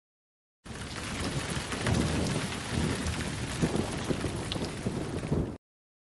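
Rumbling, crackling microphone noise on a head-mounted action camera. It starts abruptly about half a second in and cuts off just as abruptly about five seconds later, with dead silence on either side.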